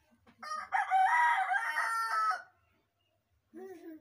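A rooster crowing once, one long call of about two seconds that starts about half a second in. A brief, lower sound follows near the end.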